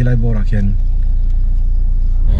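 Steady low rumble of a car on the move, with a person talking over the first moment.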